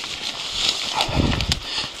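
A fallen dirt bike being heaved over rocks and brush with its engine off: scuffs and knocks of the bike, with a cluster of low thuds about a second in, amid heavy breathing from the effort.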